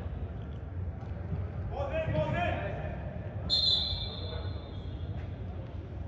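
A referee's whistle blows one high, steady blast about three and a half seconds in, fading over about a second. A distant shout comes just before it, and the low hum of a large indoor sports hall runs underneath.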